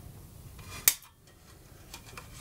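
Small flush wire cutters snipping through the red heater wire once: a single sharp snip a little before one second in, with faint handling of the wires before it.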